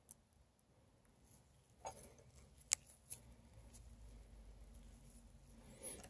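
Faint handling of insect pins at a foam mounting board: mostly near silence, with a soft tap about two seconds in, one sharp click shortly after, and a few fainter ticks.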